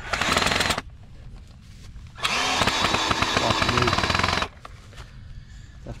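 A power tool running in two bursts with a fast rattling pulse: a short burst at the start and a longer one of about two seconds near the middle.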